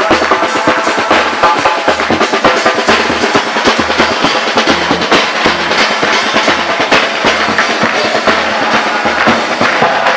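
Murga percussion of bass drum, cymbals and snare drum playing a fast, steady rhythm: dense cymbal and snare strikes over a regular bass-drum pulse.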